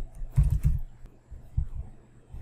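Typing on a computer keyboard: a short run of keystrokes entering a file name, the loudest cluster about half a second in, then a few scattered taps.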